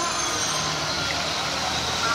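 Steady street noise on a flooded city road: an even, constant hiss of traffic and water with no distinct events.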